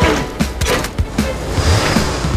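A kick scooter's small wheels rolling and rattling over the road, as a cartoon sound effect, with a string of sharp knocks. Background music plays under it.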